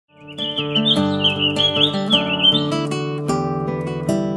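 Intro music led by acoustic guitar, with birdsong chirping over it for the first two and a half seconds.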